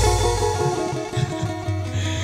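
Live stage band music: held keyboard-style notes over a low bass note, slowly getting quieter.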